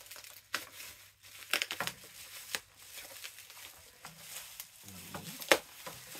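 Plastic bubble wrap crinkling and rustling as it is pulled off a small boxed ornament, with scattered sharp crackles; the loudest crackle comes near the end.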